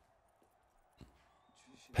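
Near silence with a faint click about a second in, then a man's voice starting right at the end.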